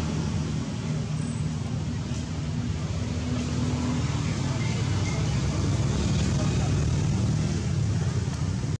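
Steady low engine drone of motor traffic.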